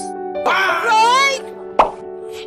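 Light keyboard background music with a comic sound effect laid over it: a short wavering, warbling tone starting about half a second in, then a sharp pop near the end.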